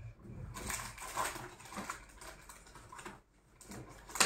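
Paper rustling and being handled on a tabletop, in irregular bursts that are busiest in the first half and quieter towards the end.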